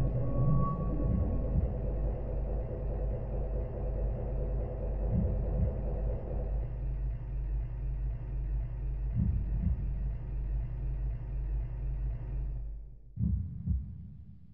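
Dark, low droning horror-film score with deep thumps in pairs, like a heartbeat, every few seconds. A last double thump comes near the end, and the drone fades out.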